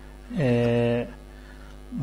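A man's voice holding one long vowel at a steady pitch for under a second, like a hesitation sound while reading, over a steady low mains hum.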